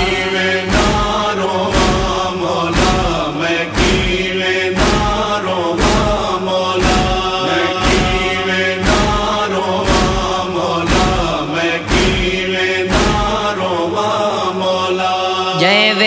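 Male voices chanting a Punjabi/Saraiki noha lament over a steady beat of matam, chest-beating thumps, about one a second. The beat stops about three seconds before the end while the chanting goes on.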